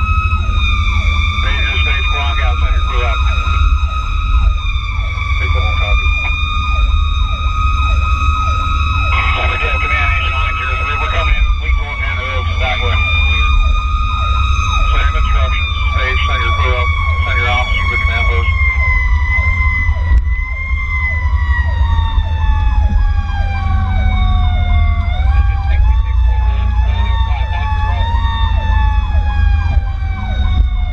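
Fire rescue truck running with its sirens on. One siren's tone holds steady, then slides slowly down in pitch and is pushed back up briefly near the end, while a faster-cycling siren pulses underneath. Heavy engine and wind rumble runs throughout.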